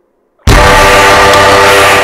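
A drawn-out "meeerroooowww" yowl, blared at near full volume and heavily distorted into a steady, horn-like blare. It starts about half a second in and cuts off suddenly after about a second and a half.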